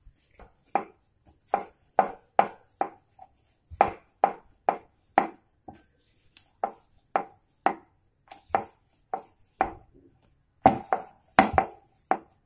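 A wooden rolling pin working on a round wooden rolling board (chakla) while a dough ball is rolled out, knocking in a steady rhythm of about two to three knocks a second in short runs with brief pauses.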